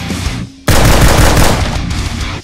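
A sudden, loud burst of rapid gunfire starting a little under a second in, an added sound effect laid over the music.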